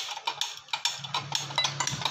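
Flat metal tawa griddle being set down and shifted on a stovetop: a run of quick, light metallic clicks and knocks over a steady low hum.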